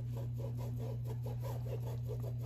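Paintbrush scrubbing paint onto fabric in quick back-and-forth strokes, about seven a second, a soft scratchy rubbing over a steady low hum.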